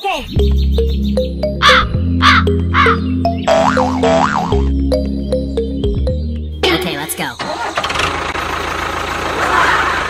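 Background music with several short cawing calls over it. About seven seconds in, the music gives way to a steady engine-like running noise, a motor sound for the toy tractor, which carries on.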